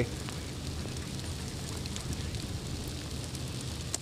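Steady outdoor hiss picked up by a field microphone while sleet and freezing rain fall.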